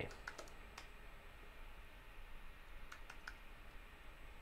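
Faint keystrokes on a computer keyboard: a few taps soon after the start, then a pause, then three quick taps near the end.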